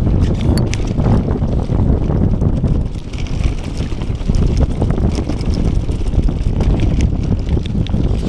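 Wind noise rushing over the microphone as a mountain bike descends a dry dirt trail, with tyre noise on the dirt and scattered sharp rattles and clicks from the bike over bumps.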